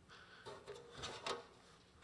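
Faint handling noises: soft footsteps, then a short cluster of light knocks and rustles as sheets of paper are laid out on a music stand, the loudest about a second in.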